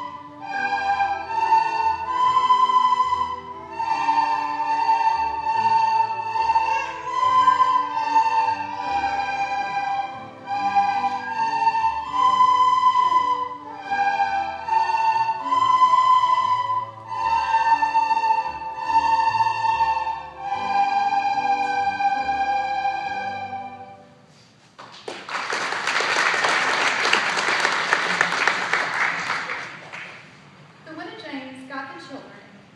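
A large group of children playing recorders together, a simple tune of held notes, which ends about 24 seconds in. Applause follows to the end.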